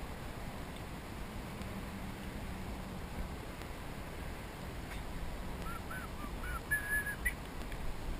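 Steady low outdoor background noise, with a bird giving a few short chirps and then a brief held note in the second half.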